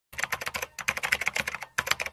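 Rapid computer-keyboard typing clicks, a typing sound effect for text being typed onto the screen, with short pauses about three-quarters of a second in and near the end.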